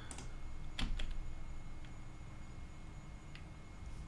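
A few sparse clicks and key taps at a computer: one near the start, a pair about a second in and one late. They sit over faint steady background hum.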